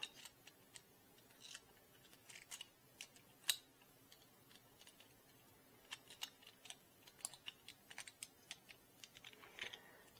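Faint, irregular clicks and taps of 3D-printed plastic extruder parts being handled and pressed together by hand, with one sharper click about three and a half seconds in.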